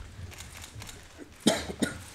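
A person coughing twice in quick succession, about a second and a half in, over the low hum of a room.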